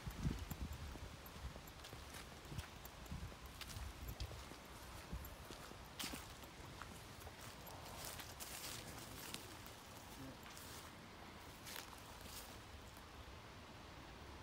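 Faint footsteps on grass, irregular low thuds over the first few seconds, followed by scattered light clicks and rustling.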